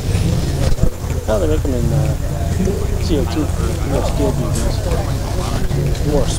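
People talking, with no words the recogniser could make out, over a steady low rumble.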